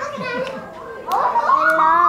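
A young child's wordless vocalising: short high voice sounds early, then from about halfway in a long, drawn-out call whose pitch wavers up and down.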